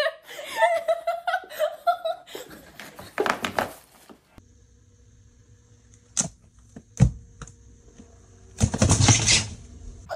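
A person laughing and shouting "stop it", then quiet broken by a few sharp knocks and one loud thump, and a short burst of rustling noise near the end.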